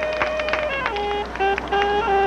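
Marching band brass holding steady notes: one long note, then a few shorter notes stepping up and down in pitch.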